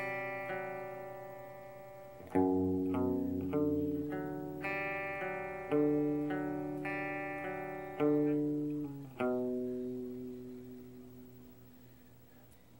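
Electric guitar playing a slow run of sustained chords, each struck and left to ring. A last chord struck about nine seconds in rings out and fades, ending the song.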